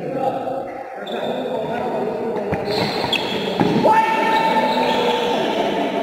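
Badminton rackets striking a shuttlecock: a few sharp hits during a rally, ringing out in a large hall over players' voices.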